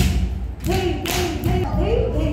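Several dancers' bare feet stamping on a hard floor in a regular rhythm during Odissi footwork, with a voice singing over the stamps.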